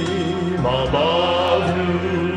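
Men's vocal group singing a gospel song, holding long notes with a wavering vibrato.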